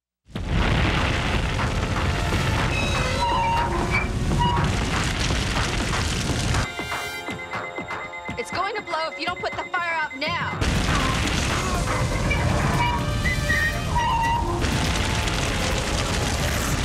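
A film's explosion sound effect: a loud, booming rumble cuts in suddenly just after the start, with music layered over it. From about seven to ten and a half seconds it gives way to warbling electronic tones, then the booming rumble returns.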